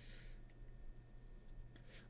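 Faint scratching and rubbing of a small paintbrush mixing paint on a wet palette, in two short strokes, one right at the start and one near the end, over a low steady hum.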